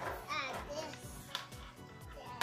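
A child's voice gives a short wavering exclamation about a third of a second in, over steady background music, followed by a single sharp click.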